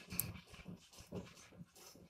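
Pen writing on notebook paper: a run of faint, short scratching strokes, the first one a little louder.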